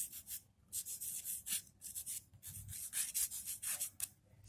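Chalk scratching across a hard surface as a word is written: a run of short, irregular strokes with brief pauses between them.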